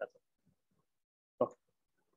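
A man's voice in short pieces: the end of a spoken word at the start, silence, then one brief vocal sound about a second and a half in.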